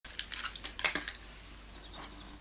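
A quick, irregular run of light clicks and taps from small objects being handled, loudest just under a second in, then only a low room hum.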